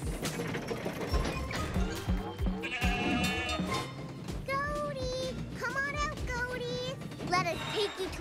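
Cartoon background music, with a goat bleating several times in short wavering calls in the second half.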